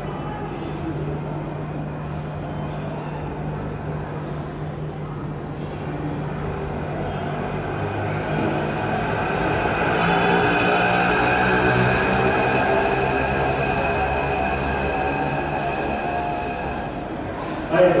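A rumbling noise with a steady hum in it, swelling over several seconds to its loudest in the middle, then easing off.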